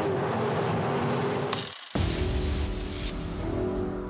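Bentley Bentayga's six-litre twelve-cylinder engine and tyre noise as the SUV drives past. A short burst of noise just under two seconds in cuts it off, and music with a strong steady bass takes over.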